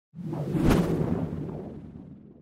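Whoosh sound effect for an animated logo intro. It swells quickly, peaks in a sharp hit about two-thirds of a second in, then fades over the next two seconds with a low rumble.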